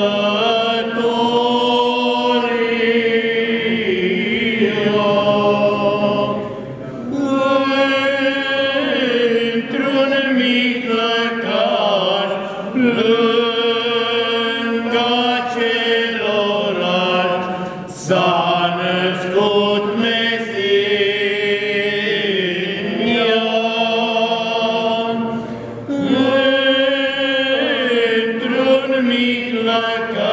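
A small group of men singing a Romanian Christmas carol (colindă) unaccompanied, in a slow chant-like style: long held phrases with brief pauses for breath three times.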